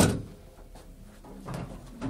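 A sharp knock right at the start, ringing briefly, then a softer knock about a second and a half in: gear being handled and bumped.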